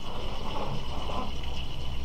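Steady background hum with a faint, steady high-pitched whine, and no distinct sounds.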